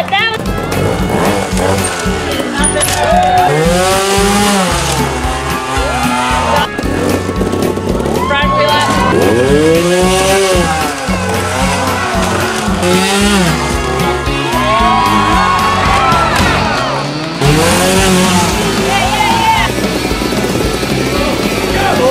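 Trials motorcycle engines revved in repeated sharp throttle blips, each one a quick rise and fall in pitch, over background music.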